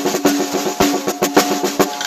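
Pearl EXR snare drum played with wooden drumsticks in a fast, busy run of strokes, about ten a second, the drum ringing under the hits.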